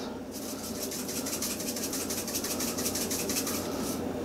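Crushed red pepper flakes shaken from a plastic McCormick shaker jar into a measuring spoon: a rapid, even rattle of about ten shakes a second that stops shortly before the end.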